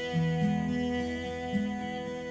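Closing instrumental bars of a song: guitar playing a slow line of low notes over steady held tones, with no singing.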